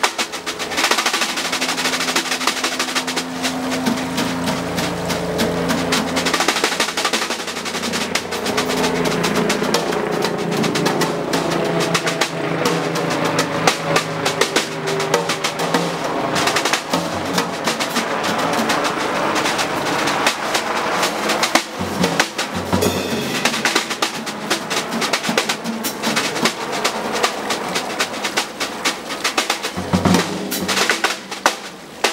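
Free-jazz improvisation on drum kit and double bass: busy, rapid strikes on drums and cymbals, with the bass holding and moving between low notes.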